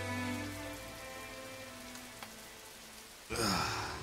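Rain pattering on a window pane under a slow, sad string melody that fades away over the first couple of seconds. A bit over three seconds in, a sudden loud voice-like sound sliding down in pitch breaks in.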